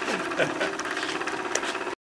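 Mackey Rodgers model steam engine running steadily with a fast, even clatter. The sound cuts off suddenly just before the end.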